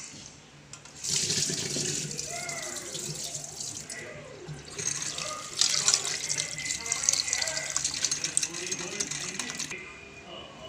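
Tap water running into a steel pot as raw chicken pieces are washed and rubbed by hand. The water starts about a second in, eases off briefly near the middle, then runs again and stops just before the end.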